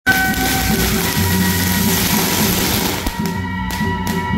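A string of firecrackers crackling densely over traditional temple-procession music with long held, wailing tones; the crackle breaks off a little after three seconds in and flares briefly again just before four.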